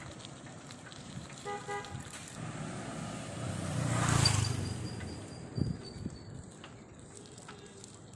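Two short horn beeps about a second and a half in, then a motorbike or scooter passing close, its engine and tyre noise swelling to a peak about four seconds in and fading away. A thin high tone lingers for a couple of seconds after it passes.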